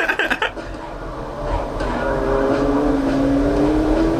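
Sports car engine pulling under acceleration, its note climbing slowly and steadily for the last two and a half seconds.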